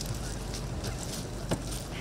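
Steady outdoor background noise with a low rumble, with a sharp click about one and a half seconds in.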